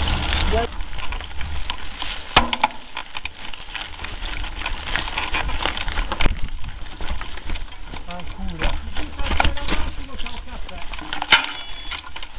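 Mountain bikes riding a rough dirt and stone trail: tyres crunching over the ground with a constant crackle of clicks and rattles from the bikes, and a few sharper knocks, about two and a half seconds in and near the end. A low wind rumble lies on the microphone throughout.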